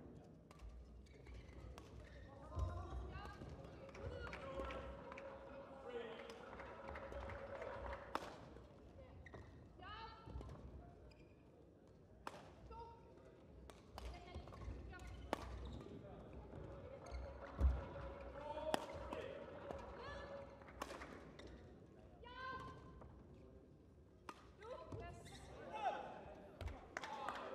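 A badminton rally: the shuttlecock is struck back and forth by rackets in sharp, irregular hits, with thumps of footwork on the court floor. The hall is echoing and the sounds are faint.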